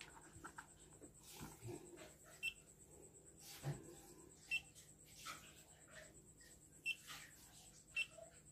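Timemore Black digital coffee scale beeping as its touch power button is pressed: short high beeps three or four times, a second or two apart, with soft knocks from the scale being handled on the table.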